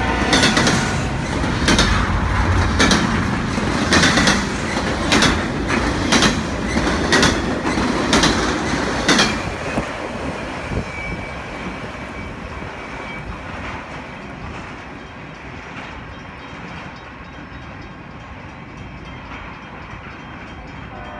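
Freight train of intermodal well cars rolling past, its wheels clicking about once a second over a steady rumble. The clicks stop about nine seconds in, and the rumble fades as the end of the train moves away.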